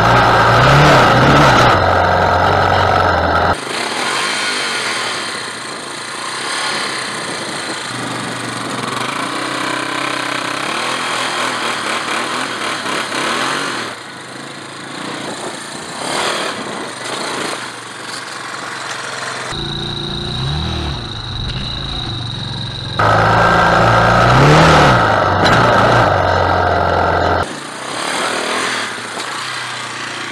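Yamaha Warrior 350 quad's single-cylinder four-stroke engine revving hard, its pitch climbing and dropping in repeated bursts. It is heard close with wind noise at the start and again about two-thirds of the way in, and farther off in between.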